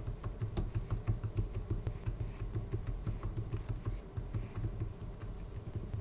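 Computer keyboard typing: a steady, irregular run of key clicks, several a second.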